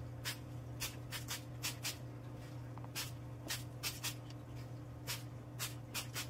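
Trigger spray bottle squirting water onto a blackboard, a dozen or so short hissing squirts in an uneven, stop-start rhythm that taps out a song to be guessed. A steady low hum runs underneath.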